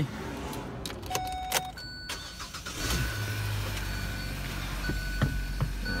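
A 2017 Hyundai i30's engine being started: a few clicks and a short chime, then the engine catches about three seconds in and settles to a steady idle. Through it a high electronic warning beep sounds about once a second.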